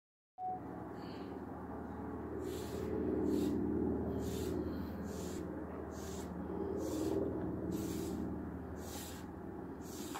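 Paintbrush strokes across a wooden tabletop: short swishes, back and forth in pairs about once a second, as metallic silver base paint is brushed on. A steady low hum runs underneath.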